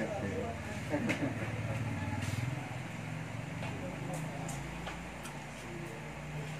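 Indistinct background voices over a low, steady hum, with a few faint clicks.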